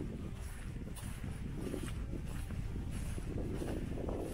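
Footsteps walking on loose sand, with wind noise on the microphone.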